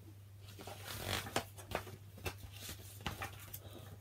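Pages of a hardback picture book being turned by hand: a soft paper rustle with several sharp clicks and flicks of the page.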